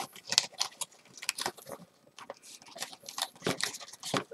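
Snack packaging being worked open by hand: a run of irregular crackles, rustles and clicks as the wrapping is picked at and pulled.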